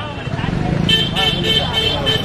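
Men's voices in a crowd over a low vehicle rumble. From about a second in, a short high tone repeats about four times a second.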